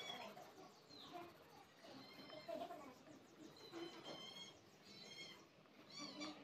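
Faint bird chirps: short high calls that come and go every second or so over quiet room tone.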